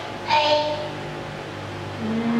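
A brief, high-pitched voice sound, a single short vocalization, about a third of a second in, over a steady low hum.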